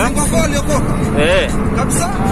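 Steady engine and road noise inside a moving car's cabin, with short bursts of a voice over it.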